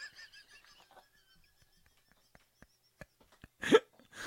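High-pitched, squeaky wheezing laughter, a quick run of short pulses that fades away in the first second, then a short loud burst of laughter near the end.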